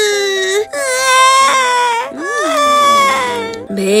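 A voice crying like a hungry baby, in long wailing cries one after another, each bending in pitch. Background music with a steady low note plays underneath.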